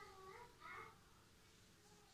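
Near silence: room tone, with faint, short wavering calls in the first second.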